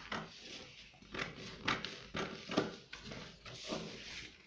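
Scissors snipping through a paper pattern: a series of short, crisp cuts at an uneven pace, about two a second.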